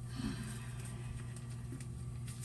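Quiet kitchen room tone: a steady low hum with faint small noises and a brief low murmur about a quarter second in.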